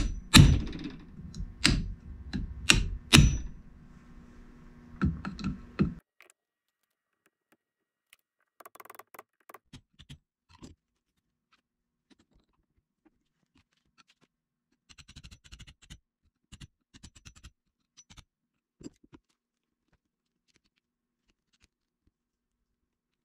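A handful of sharp metallic knocks as a flat screwdriver blade is worked against the metal clamp of a CV axle boot held in a vise, over a low hum that stops about six seconds in. After that only faint clicks and rustles of the axle and small parts being handled.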